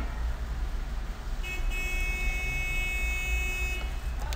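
A horn sounding one held note of about two and a half seconds, starting about one and a half seconds in, over a steady low hum.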